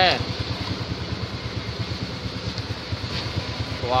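An engine running steadily, a low rumble with a fast, even pulse, heard aboard a small river ferry under way.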